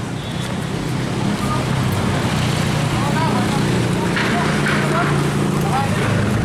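Street traffic with a vehicle engine running close by, getting louder over the first couple of seconds and then holding steady. Faint voices can be heard in the background.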